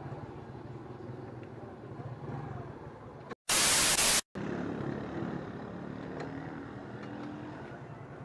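Scooter engine and road noise, a steady low rumble while riding, cut a little over three seconds in by a short, very loud burst of TV static from a colour-bar glitch transition.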